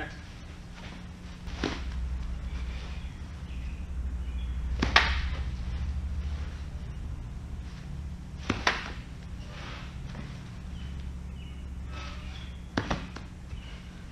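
Four sharp knocks a few seconds apart, the loudest about five seconds in, over a steady low hum.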